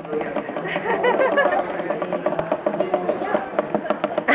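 Background babble of voices with scattered light taps and clicks.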